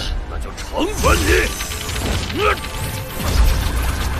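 Animated fantasy-battle soundtrack: sound effects with a constant low rumble, under music, with a man's voice delivering a short menacing line.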